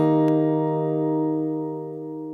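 Music: the final chord of a song held and ringing out, slowly fading away, with a faint click just after it begins.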